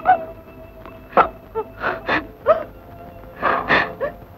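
A person's short, gasping breaths and broken vocal sounds, a few in each second, over a sustained note of background music.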